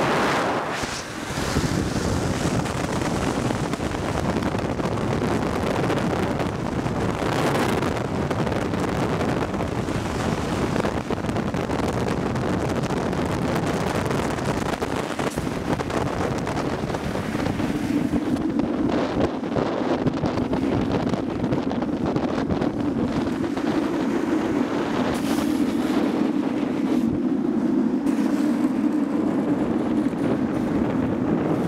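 Wind rushing over the microphone and road noise from moving at downhill speed on asphalt. A little past halfway a low, steady hum joins it.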